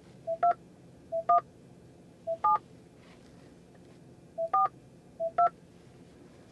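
Five touch-tone (DTMF) key tones from a Ford Mach-E's touchscreen phone keypad, each key press giving a brief lower beep followed by the two-note dial tone. The digits 2, 1, 7, 4, 2 are keyed, entering a five-digit recall number into an automated phone menu.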